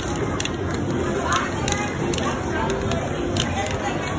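Aerosol spray-paint can spraying with a hiss, among indistinct background voices.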